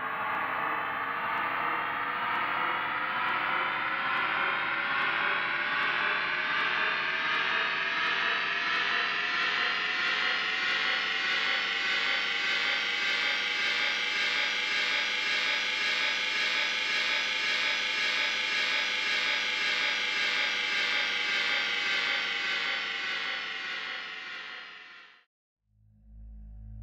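Orkid Singularity software synthesizer playing its 'Doomsday' program, which layers ambient-snare, voice and crash-cymbal samples. It sounds as one long, dense sustained drone with many overtones, gliding slowly upward in pitch over the first dozen seconds, then holding. It fades out and stops shortly before the end.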